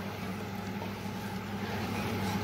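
Steady low hum under an even hiss, with no clinks or scrapes standing out.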